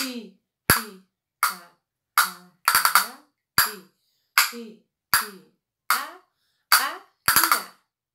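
A pair of castanets played in a steady practice pattern: single sharp clicks about every three-quarters of a second, broken twice by a quick roll (carretilha), about three seconds in and again near the end.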